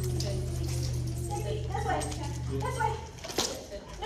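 Indistinct voices over a steady low hum that cuts off about three seconds in, followed shortly by a single sharp knock.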